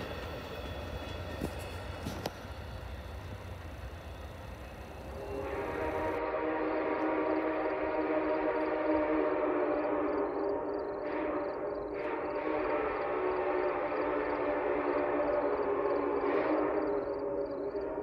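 Amtrak passenger train rolling away, its low rumble fading, with a couple of clanks. About six seconds in the sound cuts to a louder, steady chord of several held tones with a faint regular ticking above it, which lasts to the end.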